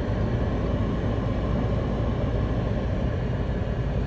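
Steady vehicle noise: an even low rumble with a hiss over it.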